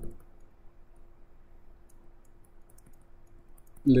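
Faint scattered clicks and taps of a stylus on a tablet screen during handwriting, more of them in the second half, over a faint steady hum.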